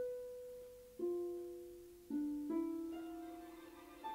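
A slow, sparse melody of five single notes from one instrument, each starting sharply and fading over about a second; the notes come about a second apart, then three close together near the middle.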